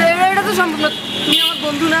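A man's voice talking, with a brief high-pitched vehicle horn toot from street traffic about a second in.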